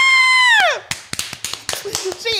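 A high-pitched squeal of delight at a correct answer, held for under a second and bending down at the end, followed by a quick run of claps or taps.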